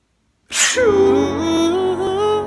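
A man's mock sneeze: a sharp breathy "ah-choo" burst about half a second in. It turns straight into a long sung note whose pitch wavers up and down, a sneeze performed as a soulful ballad.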